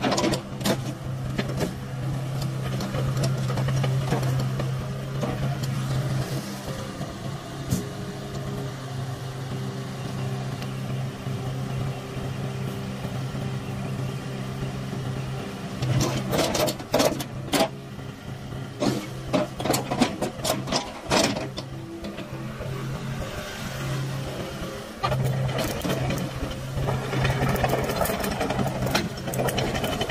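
Hitachi ZX70 7-ton excavator's diesel engine running steadily under hydraulic load as the boom and bucket are worked. Bursts of sharp clanks and knocks come about halfway through and again near the end.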